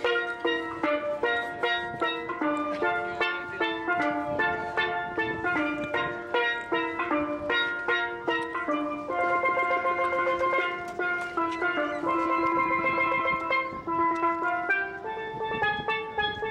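A steel pan (steel drum) played by hand with mallets: a melody of quick struck, ringing notes, moving to longer held notes from about nine seconds in.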